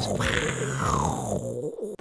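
Explosion sound effect dying away over about a second and a half, with a person laughing over it.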